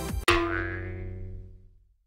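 Background music cuts off, then a single ringing transition sound effect is struck and dies away over about a second and a half, its higher tones fading first.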